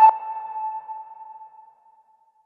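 A single electronic ping tone, ringing and fading away over nearly two seconds.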